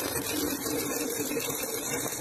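Stick-welding arc crackling as the electrode burns along a steel corner joint: the crackle starts suddenly and holds steady and even, over a low hum.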